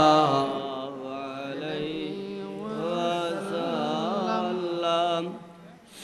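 A man chanting the Arabic blessing on the Prophet (salawat, "sallallahu alaihi wa sallam") in long, ornamented melodic phrases. The chant dies away about five seconds in.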